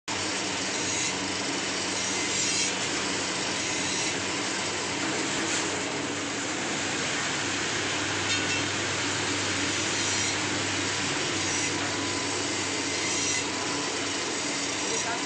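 Dual-shaft metal swarf shredder running: a steady, even mechanical grinding noise with a low hum underneath.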